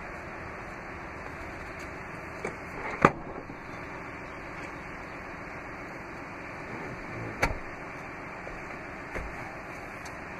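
Clicks and clunks of a 2017 Chrysler Pacifica's Stow 'n Go third-row seat being raised, as the head restraint and seat back latch into place. The loudest, sharp click comes about three seconds in and another about seven and a half seconds in, with a few fainter knocks, over steady background noise.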